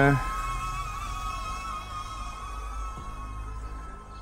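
Stock DJI Neo quadcopter's motors and propellers whining steadily in forward flight, several close high tones held at a nearly even pitch, over a low rumble.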